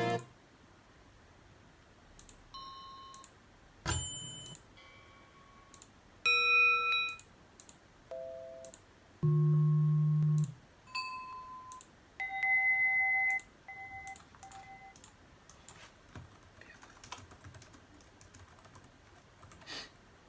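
Short snippets of assorted bell sound effects played back from a computer as a bell sound-effects video is skipped through, about ten different tones, each cut off after a second or less. Near the end, light clicking of a computer keyboard being typed on.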